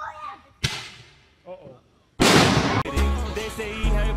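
A short, sharp crack-like burst about half a second in, then a louder rushing burst about two seconds in. Music with a heavy bass beat starts just after.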